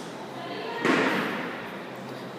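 A single heavy thud about a second in, fading briefly in the echo of a large room.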